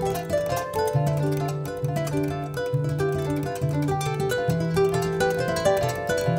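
Instrumental music: plucked kora strings playing quick, interlocking melodic runs over a low note that repeats about once a second.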